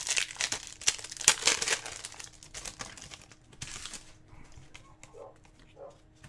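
Trading-card pack wrapper crinkling and tearing while hockey cards are handled, with busy rustling for the first two seconds, another burst a little later, then only faint handling.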